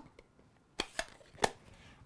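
Craft supplies being handled on a tabletop: two sharp clicks about two-thirds of a second apart, with a fainter tap between them.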